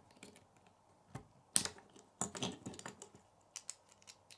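Plastic Lego pieces clicking as wheels are pushed onto the axles of a small Lego car: a few sharp, irregular clicks and snaps, the loudest about a second and a half in.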